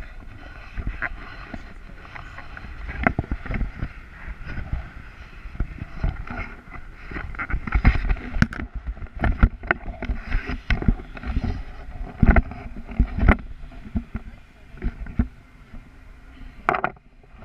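Wind buffeting the camera microphone in flight under a tandem paraglider, as a low rumble. Over it come frequent knocks and rustles from the camera moving and rubbing against the harness and jacket.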